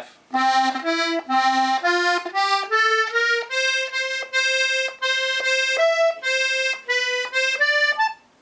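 Strasser Steirische diatonic button accordion, its treble side with three sets of middle reeds (MMM), sounding short single notes button by button along the F row. The notes come about two or three a second and step upward in pitch.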